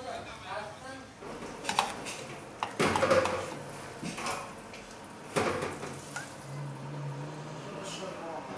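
Metal ladle and metal serving bowl clinking and scraping as broth is dipped and poured, with several sharp clinks that ring briefly, the loudest about three seconds in and another past five seconds.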